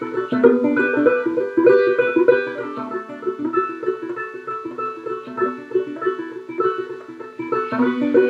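A banjo strung upside-down and played left-handed, picking a steady run of plucked notes and chords with no singing.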